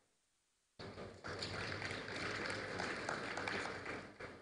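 Faint applause from a hall audience, a dense patter of many hands clapping, starting about a second in after a moment of dead silence and fading out just after the end.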